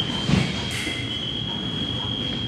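Electronic fencing scoring machine sounding its steady high-pitched tone to signal a touch. A dull thump comes about a third of a second in.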